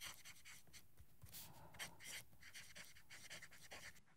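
Faint scratching of a steel broad fountain-pen nib on paper as cursive words are written, in short, irregular strokes.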